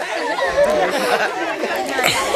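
Crowd of schoolchildren chattering, many voices talking over one another.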